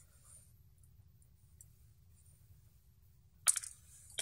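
Quiet room tone with faint small ticks from tiny screws and a small screwdriver being handled, then one short, sharp noisy sound near the end.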